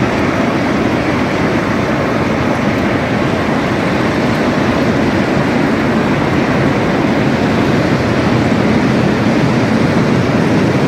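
Cement grinding ball mill running, the steel grinding balls tumbling inside the rotating shell in a loud, steady, dense noise. This is the mill sound that an electronic ear listens to in order to gauge how full the mill is.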